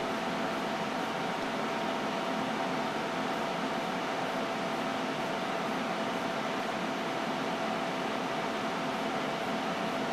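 Steady whirr and hiss of running computer cooling fans, with a faint steady hum.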